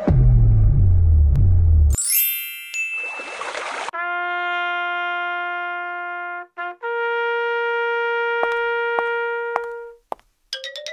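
Intro music and sound effects: a loud low booming whoosh, a glittering sweep of high tones, then two long held brass-like notes, the second higher than the first, with a few light taps under the second.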